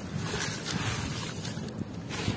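Handful of dry, grainy crumbled texture dropped into a bucket of muddy water, splashing and hissing as the grains sink into the slurry, easing off shortly before the end.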